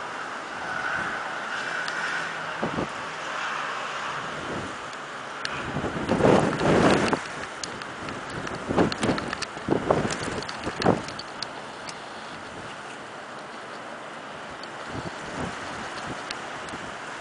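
Wind buffeting the microphone in stormy weather, with a loud gust about six seconds in. A run of sharp clicks and knocks follows between about nine and eleven seconds.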